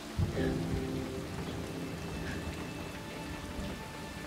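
Film soundtrack: soft background music of several held low notes over a steady rain-like hiss, with a brief low knock just after the start.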